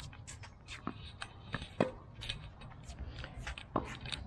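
Irregular sharp clicks and taps over a low rumble, about a dozen spread unevenly through the few seconds, the loudest just under two seconds in.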